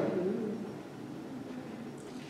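A pause in a man's speech: the end of his voice fades out in the first half second, leaving low room tone of a large hall.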